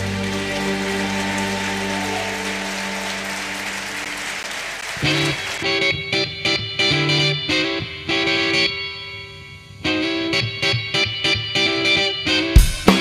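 A held chord from bowed strings fades out. About five seconds in, a solo electric guitar starts a slow line of separate picked notes through an effects unit, pausing briefly near the middle before going on.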